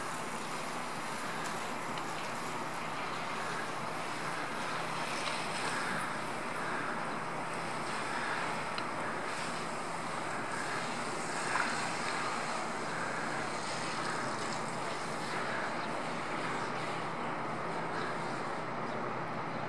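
Steady rushing noise like wind on the microphone, with faint soft thuds at fairly even spacing from a horse's hooves tölting on soft arena footing.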